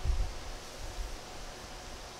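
Faint rustle of a hand moving over the pages of an open hardback book, over a steady background hiss, with a couple of low bumps near the start.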